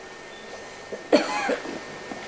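A man coughs once, sharply and briefly, about a second in, after a stretch of quiet room tone.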